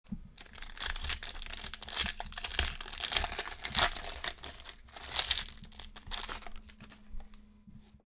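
A foil trading-card pack of 2020 Panini Select Football being torn open and crinkled by hand: a dense crackle, loudest in the middle, that cuts off suddenly at the end.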